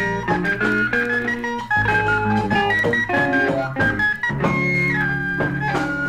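Instrumental passage of Senegambian band music: electric guitar and keyboard lines over a continuous bass.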